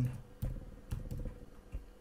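Typing on a computer keyboard: a few separate keystrokes, the last letters of a file name, over a faint steady hum.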